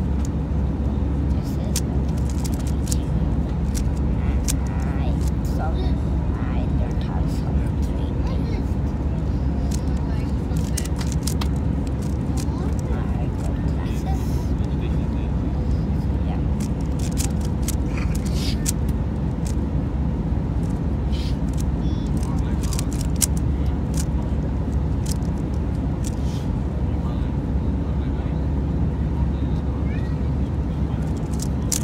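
Steady low drone of an airliner cabin, with frequent quick plastic clicks of a 3x3 Rubik's cube being turned.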